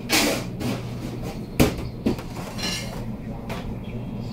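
Kitchen work clatter over a steady low hum: a brief rustle at the start, then one sharp knock on a hard surface about a second and a half in, with a couple of lighter knocks after it.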